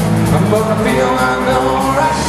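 Live blues-rock band playing loud, with electric guitars, bass guitar and drums; held guitar notes shift in pitch as the tune moves on.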